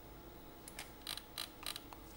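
Several quiet, sharp clicks from a computer keyboard and mouse in the second half, as a spreadsheet is scrolled and navigated.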